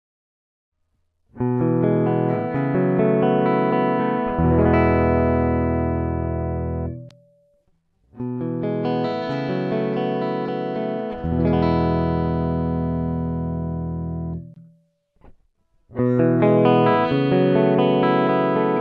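Clean electric guitar played direct with no effects, the same short phrase played three times: a run of short muted low notes, then a chord left ringing for a few seconds, with brief gaps between takes. The takes go through DiMarzio magnetic humbuckers: the Air Norton in the neck, then the Air Norton wired in parallel, then the Air Norton with the Tone Zone.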